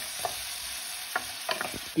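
Chopped onion frying in hot oil in a metal pan, sizzling steadily as it is stirred with a wooden spoon, with a few short clicks through the sizzle.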